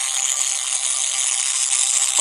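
Added repair sound effect for a robot being patched up: a steady hiss.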